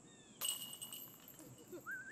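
A golf disc strikes the top of a metal disc golf basket's cage about half a second in and drops in: a sudden clank with a high metallic ring that fades over about a second.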